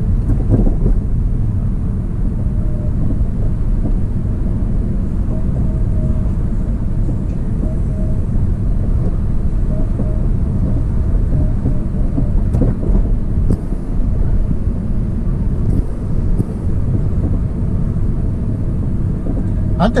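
Steady low rumble of a car driving, heard from inside the cabin: engine and tyre noise.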